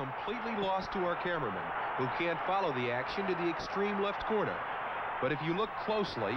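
A man talking over a steady noisy background; no other sound stands out.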